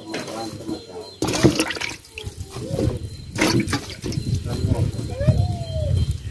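Wet leafy vegetables being handled over a basin of water, with splashes and a few sharp knocks, under talking voices.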